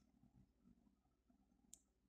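Near silence: faint room tone, with one faint click near the end.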